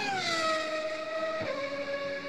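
Car engine sound effect: a high engine note falls in pitch over about the first second, then holds steady while slowly fading, with a brief blip about one and a half seconds in.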